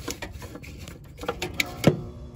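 Several sharp plastic clicks and knocks as a license plate lamp assembly and its corrugated wiring loom are forced back through the bumper opening, the loudest click near the end.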